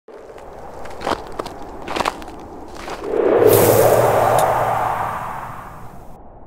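Sound effects of an animated logo intro: a few sharp hits, then a loud whoosh that swells about three seconds in and slowly fades away.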